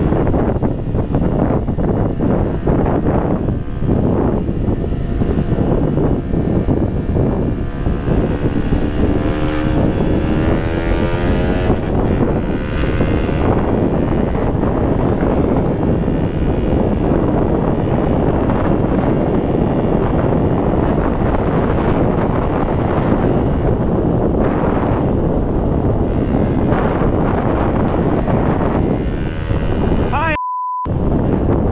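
Wind rushing over a helmet-mounted camera's microphone mixed with a KTM Duke motorcycle's engine at road speed. Between about 8 and 13 seconds in, an engine tone stands out and glides in pitch.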